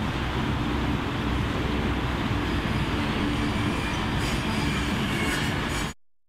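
A train running on rails: a steady rumble and rush of noise that cuts off abruptly at the very end.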